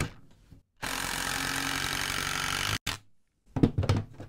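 DeWalt 12V Xtreme brushless impact driver (DCF801) on its high-speed setting, hammering a long wood screw into a timber beam in one steady run of about two seconds that stops abruptly, followed by a brief click.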